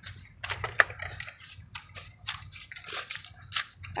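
Footsteps crunching and scuffing on a gritty dirt path, a run of short irregular crunches over a low rumble.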